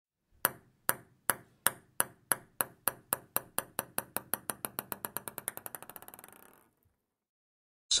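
Intro sound effect: a run of sharp, ringing pings that come steadily faster and fainter, running together into a brief buzz before dying out about six and a half seconds in.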